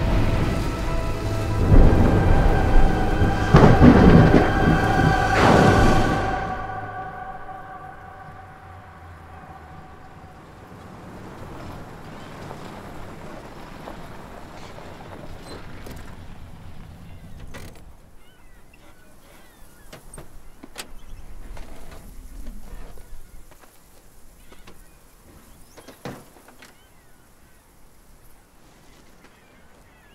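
Film soundtrack: thunder and heavy rain under swelling music for about six seconds. It then drops away to a quiet outdoor ambience with a few scattered clicks and a single thump near the end.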